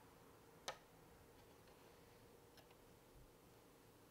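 Near silence with a faint steady hum, broken by one sharp light click about two-thirds of a second in and a fainter one later: fingers handling a hard plastic toy while pressing a sticker down onto it.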